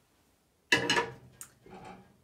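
Stainless steel saucepan set down in the sink with a sudden clank about two-thirds of a second in, ringing briefly, followed by a lighter clink.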